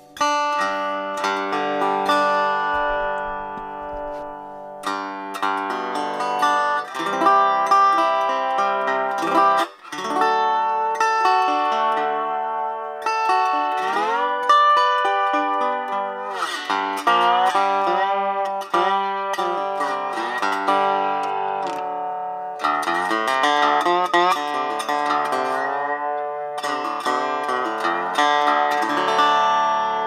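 Beard Road-O-Phonic resonator lap steel played acoustically with its pickups off, so only the resonator cone's own sound is heard: picked notes and chords ringing, with slide glides in pitch. The player calls it "a little bit of acoustic sound, not much."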